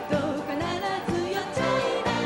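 A female Japanese pop singer singing live into a handheld microphone over a pop band accompaniment, her held notes wavering with vibrato.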